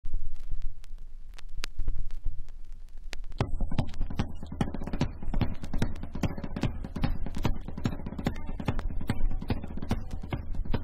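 Punk rock band recorded live, 1982. The song opens sparse, with a low rumble and a few sharp hits, then the full band with driving drums comes in about three and a half seconds in.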